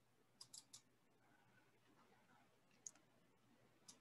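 Faint computer mouse clicks over near-silent room tone: three quick clicks about half a second in, then single clicks near three seconds and at the end.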